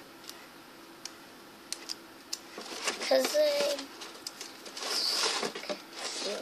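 Handling noise of tape and foil-covered cardboard: a few light clicks, then a rustling, tearing noise near the end. A brief voice sound comes about three seconds in.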